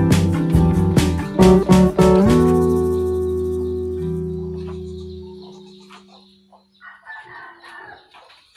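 Acoustic guitar background music strumming, its last chord ringing out and fading away over about three seconds. In the lull near the end, a rooster crows faintly and chickens cluck.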